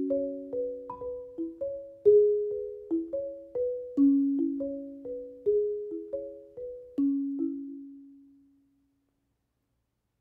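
Marimba playing a gentle passage of struck single notes and two-note chords, about two strikes a second. It ends on a low note about seven seconds in that rings away to nothing.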